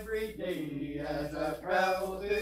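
A small group of a man and women singing a gospel song together into a microphone, in long held notes, over a low steady hum.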